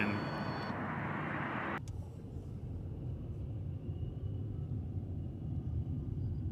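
A steady rushing noise that cuts off suddenly about two seconds in, giving way to the low, steady rumble of a car driving slowly, heard from inside the cabin.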